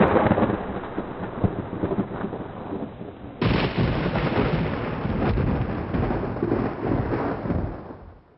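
A low, noisy rumble with a few sharp crackles. It jumps louder about three and a half seconds in and fades out at the end.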